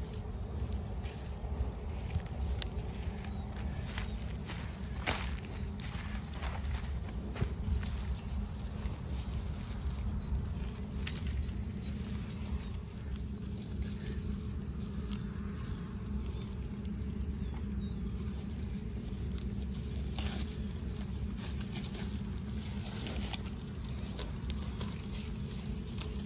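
Cattle walking and grazing in dry corn stalks: scattered crackling and rustling of the stalks under hooves and mouths, over a steady low rumble.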